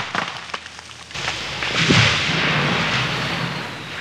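Falling-tree sound effect: a run of sharp cracks and splintering, then a heavy crash with a low thump about two seconds in, followed by a rustling noise that fades out.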